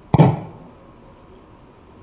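A single sharp smack of a bouncy ball thrown down onto a hard stage floor, with a brief echo in the hall.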